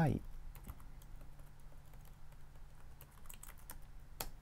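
Computer keyboard being typed on: scattered light key clicks, with a quick run of several keystrokes about three seconds in.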